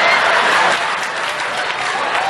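Audience applauding, a dense patter of many hands clapping that eases slightly after about a second.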